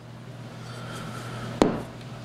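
A single sharp knock on a wooden workbench about one and a half seconds in, as an object is put down or picked up, over a low steady hum.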